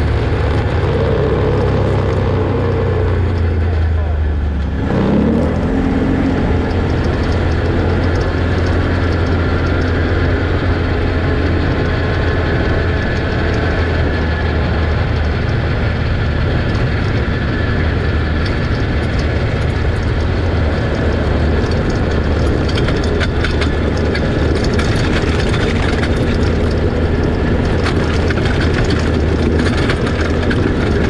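Can-Am Outlander 650 ATV's V-twin engine running steadily under way. About four to five seconds in, the engine note drops and picks up again. Over the second half, short rattles and knocks from the rough trail join it.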